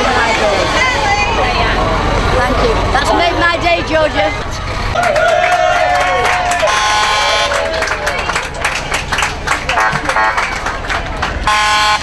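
Bus idling with a crowd chattering around it; a pitched hoot from the bus sounds briefly twice, about halfway through and again near the end.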